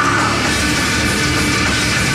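Heavy metal band playing live at full volume: distorted electric guitars, bass and drums, loud and steady.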